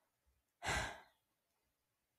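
A single sigh, a breathy exhale lasting about half a second, a little under a second in.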